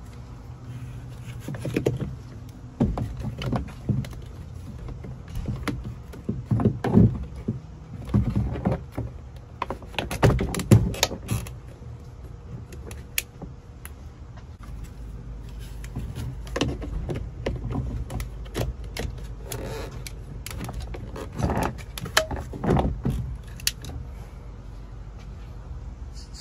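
Hands fitting aftermarket turbo-style AC vents into a plastic dash trim bezel: scattered plastic clicks, knocks and rattles as the vents are pushed in and twisted until they click into place, over a steady low hum.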